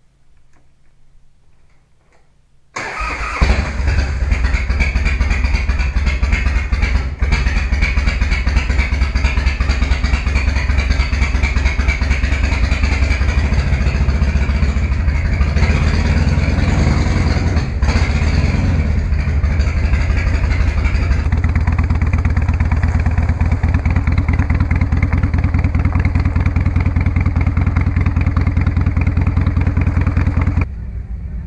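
Harley-Davidson V-twin motorcycle engine started about three seconds in, then left running at a loud, steady idle with an even pulsing beat.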